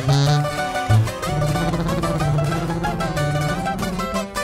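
Instrumental break of a corrido: a sousaphone plays a bass line of held notes under quick plucked-string runs.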